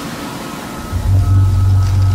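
Horror film soundtrack: a soft hiss of ambience, then about a second in a loud, deep drone starts abruptly and holds, a scare cue under the monster's appearance.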